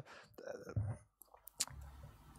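A soft, hesitant 'uh' and the quiet rustle of a sheet of paper handled close to a microphone, with two sharp clicks about one and a half seconds in.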